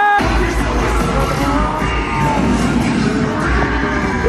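Cheerleading routine music playing loud over the arena's speakers, with heavy bass and sung vocal lines. A held high note cuts off just after the start.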